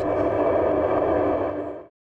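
Steady background noise with a low hum, cutting off abruptly shortly before the end.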